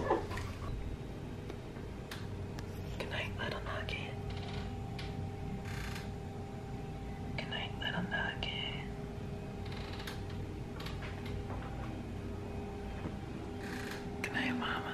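Soft whispering over a steady low hum in a quiet room.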